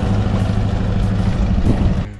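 Hindustan Ambassador car's engine running with a steady low hum as the open-top car drives away across stone paving.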